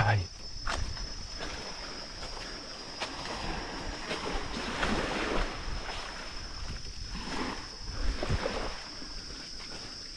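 A steady, high-pitched drone of insects, such as crickets or cicadas, runs throughout. Beneath it a soft rushing noise swells and fades, and a few light footsteps fall on leaf litter and sand.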